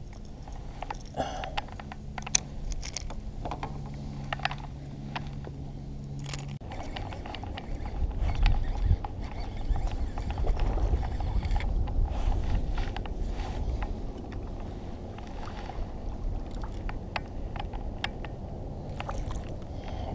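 Fishing from a kayak with a baitcasting reel: a steady low whir for the first six seconds or so as the crankbait is reeled in, then scattered clicks and knocks of reel, rod and hull, with wind rumbling on the microphone in the second half.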